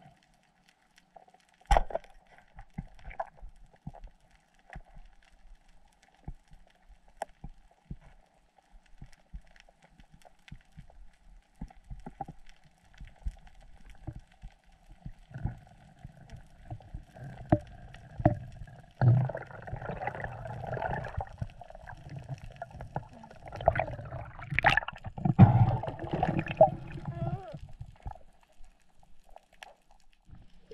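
Underwater sound picked up by a diver's camera during a pole-spear dive: muffled clicks and knocks, with one sharp knock about two seconds in. From the middle on, a louder, busier stretch of knocks and water-rushing noise as the diver moves.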